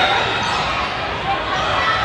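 Volleyball rally on a hardwood gym court: ball contacts and sneakers squeaking on the floor. Players and spectators call out over it, all echoing in the large hall.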